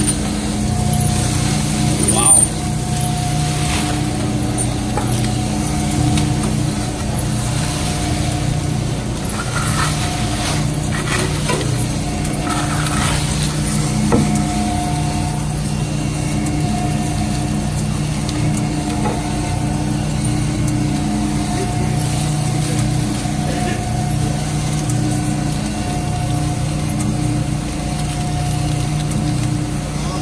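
Steady hum and low rumble of a 50-horsepower H-50 hybrid dual-shaft industrial shredder running, with a higher tone that comes and goes every few seconds. There is a brief knock about two seconds in.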